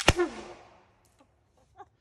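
A PVC potato launcher firing: a sharp bang at the very start, followed by a short tone that falls in pitch and dies away within about half a second.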